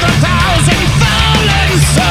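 Heavy metal band playing at full tilt: distorted electric guitar, bass and drums, with a male lead singer's voice over the top.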